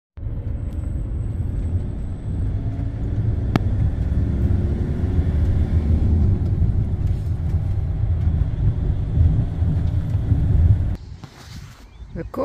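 Motorhome driving along a narrow village road, a steady low engine and road rumble heard from inside the cab. It cuts off suddenly near the end to a much quieter background.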